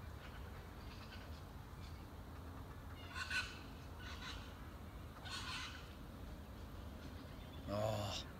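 A few short bird calls over a low steady outdoor hum, the clearest about three seconds in and again about five and a half seconds in.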